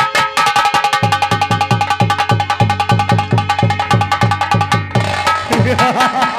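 Live nautanki accompaniment: drums play a fast, driving rhythm of sharp strokes over deep, bending bass beats, with a steady held note above. The drumming breaks off about five seconds in.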